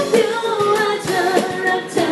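Live band playing a Thai pop song: a woman singing in Thai into a microphone over guitar, with drum strikes on an electronic percussion pad.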